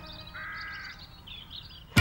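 A bird gives one short call of about half a second over quiet outdoor ambience, with smaller, higher chirps after it. Music comes back in suddenly at the very end.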